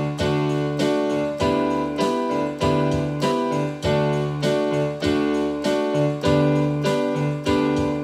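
Electronic keyboard playing a D scale with C natural in steady quarter notes, each scale note struck four times, about one strike every 0.6 seconds, with the pitch stepping up every four strikes over a lower accompaniment.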